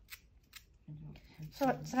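Small carving knife cutting into a crisp raw turnip carved as a rose: two short, crisp cuts in the first half-second or so.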